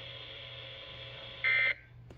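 Weather radio receiver playing a NOAA Weather Radio broadcast's steady hiss, then about one and a half seconds in a single short, loud, buzzy digital data burst: the SAME end-of-message code that closes the weekly test. The hiss cuts off right after the burst as the receiver's audio drops.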